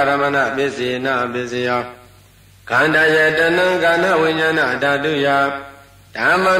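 A monk's voice chanting Pali Buddhist verses in a steady, held recitation tone. The chant breaks briefly for a breath about two seconds in and again near the end.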